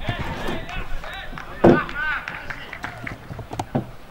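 Men's voices calling out short shouts across an outdoor football pitch, with a few sharp knocks and one louder thud a little before halfway through.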